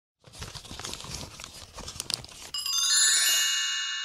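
Title-intro sound effects: crackly paper-like crinkling and crunching for about two seconds, then a bright, shimmering chime that rings out suddenly and slowly fades.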